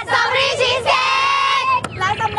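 High-pitched young women's voices singing together, with one note held for most of a second in the middle. There is a short click near the end.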